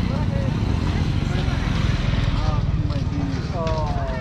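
Busy street-market bustle: voices of shoppers and vendors nearby, clearer in the second half, over the low running of a motorbike engine passing through the lane.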